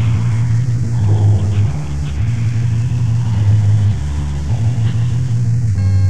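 Dark ambient music: a loud, low droning bass that shifts pitch every second or two under a noisy, rumbling haze. Near the end it gives way to a steady sustained synthesizer chord.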